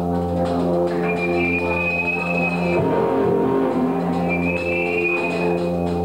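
Live band of keyboard, bass guitar, electric guitar and drum kit playing a slow held chord, with two long high notes over it and light, regular cymbal ticks.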